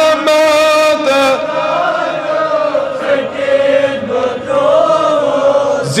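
A man's voice chanting a Kashmiri naat, a devotional poem in praise of the Prophet, into a microphone, drawing out long held notes that slowly rise and fall.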